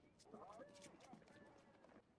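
Faint film soundtrack, barely above silence: quick clattering steps with faint voices or calls over them.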